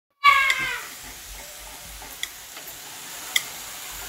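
A child's brief, high-pitched vocal sound, falling slightly in pitch, within the first second, followed by steady outdoor background hiss with two small clicks.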